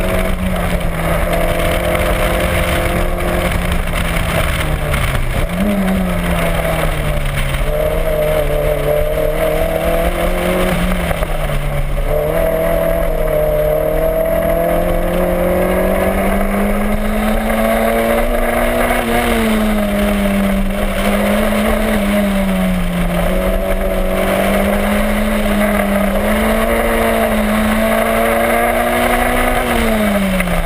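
Toyota MR2's four-cylinder engine driven hard through an autocross course, its note climbing and dropping in pitch again and again as the throttle is worked around the cones.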